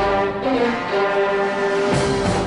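Orchestral background music, with brass holding one long note through the second half.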